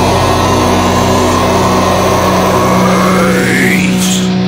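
A noisy swept sound effect in the closing of a metal song, dipping and then rising in pitch toward the end, over a sustained low note.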